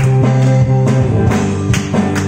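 A live band playing a worship song, with electric bass and electric guitar over a steady beat of about two strokes a second. The bass moves down to a lower note a little past the middle.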